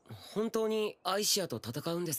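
A voice speaking a short line of Japanese anime dialogue in several quick phrases.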